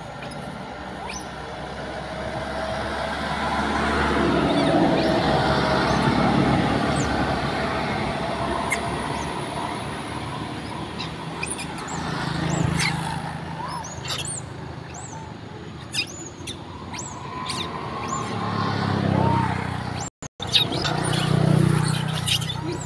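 A passing vehicle, rising and fading over several seconds, then lower rumbling and a scatter of short high chirps. All sound cuts out briefly shortly before the end.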